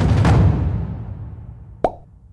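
Comic sound effects: the tail of a rumbling drum roll fading away, then a single short cartoon "plop" with a quickly falling pitch near the end.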